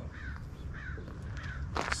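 A bird calling in a string of short, faint calls, several in two seconds.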